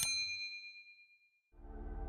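A single bright bell-like ding that rings out and fades away over about a second. After a moment of silence, soft music fades in near the end.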